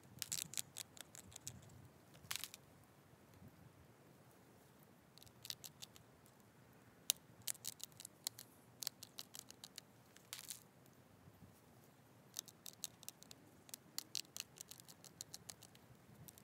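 Antler pressure flaker working the edge of an agatized coral Clovis point held on a leather pad: small, sharp clicks and snaps as flakes pop off the stone. They come in several bursts with short pauses between.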